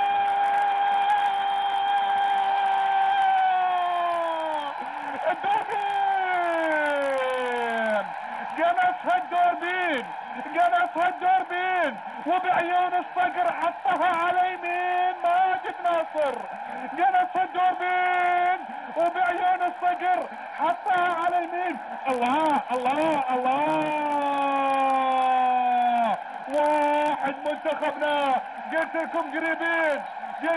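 A male football commentator's goal cry: a long, high-pitched held shout that slides down in pitch, followed by excited, sing-song shouting in many short held notes, with another long falling cry near the end.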